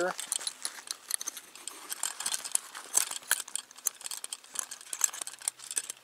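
Bent metal wire clip of a military holster clicking and rattling against the holster's hard shell as the hood is taken off: a run of small, irregular clicks.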